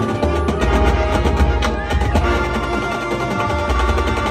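High school marching band playing: brass with drumline and front-ensemble percussion, with occasional sharp percussion strikes.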